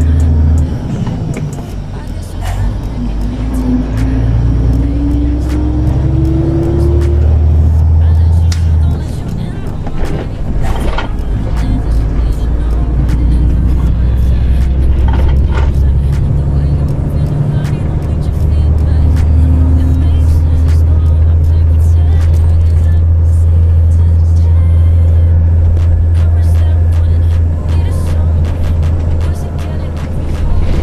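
Volvo truck's diesel engine heard from inside the cab, droning steadily under way. Its pitch rises for a few seconds as it pulls through a gear, and the drone steps up and down in level at gear changes, with music playing over it.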